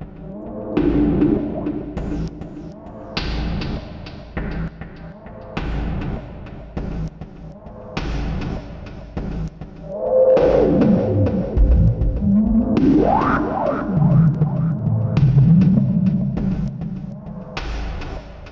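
Layered cinematic sample-library loops playing as one patch: heavy percussive hits at an uneven pace over a low gritty bass bed. In the second half a swooping pitch sweep falls and then rises steeply.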